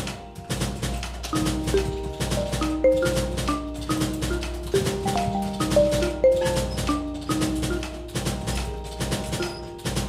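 Robotic marimba playing a melody of short, quickly fading mallet notes over a fast, busy beat of sharp percussive clicks.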